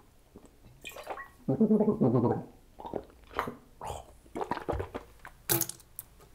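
A man gargling a mouthful of dilute iodine water as a throat rinse, with a short laugh breaking in partway through, then spitting into the sink near the end.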